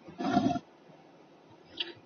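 A man's brief breathy vocal sound in the first half second, then quiet room tone, with a short hiss near the end as his next words begin.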